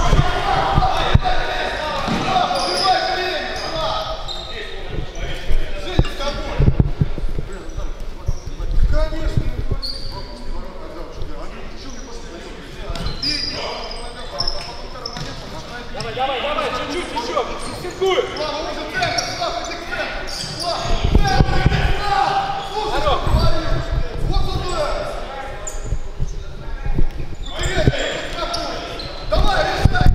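Futsal ball being kicked and bouncing on the wooden floor of a large, echoing sports hall, as repeated sharp knocks, with voices calling around the court.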